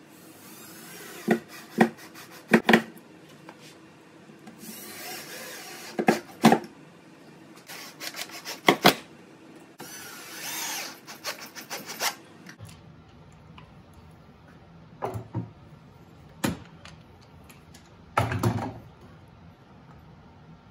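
Cordless drill driving 1¼-inch pocket-hole screws into pine in short whirring bursts, broken by sharp clicks and knocks of the bit, screws and wood being handled. A heavier knock near the end.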